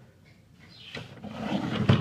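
Plastic Lego figures being handled and swapped: a rubbing, shifting rustle that builds about a second in and ends in a sharp plastic clack near the end.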